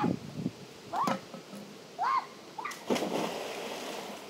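Someone jumping into a swimming pool: two short rising-and-falling cries, then a sudden splash just before three seconds in, followed by about a second of water noise.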